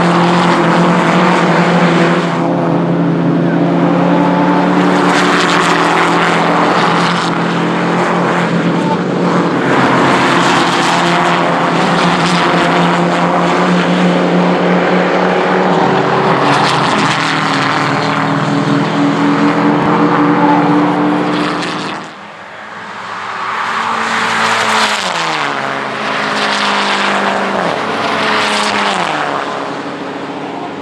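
Škoda Octavia Cup race cars' engines running hard as a small group of cars goes past, the engine notes holding and shifting in pitch. The sound drops briefly a little after twenty seconds, then several engine notes fall in pitch as the cars come off the throttle.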